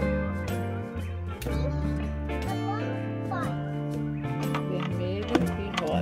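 Background music with a bass line that steps from note to note under a melody, with a few voices over it near the end.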